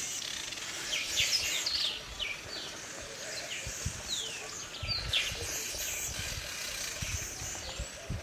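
Several birds chirping in short, quick, falling calls, over a low rumble.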